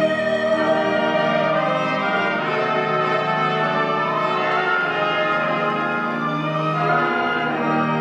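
Orchestra playing slow music in long held chords.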